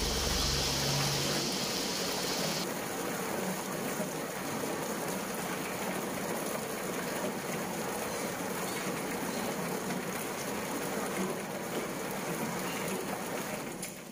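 Drum-type chicken plucker spinning scalded chickens in water against its rubber fingers, making a steady wet churning noise as the feathers are stripped off. A low motor hum and a higher hiss at the start die away within the first few seconds.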